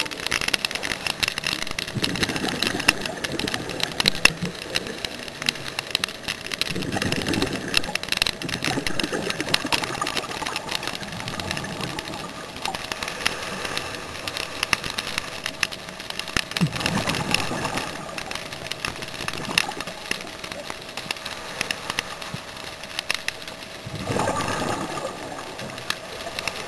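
Underwater sound of scuba diving: bursts of a diver's exhaled regulator bubbles, gurgling and rumbling every several seconds, over a constant fine crackle and a faint steady hum.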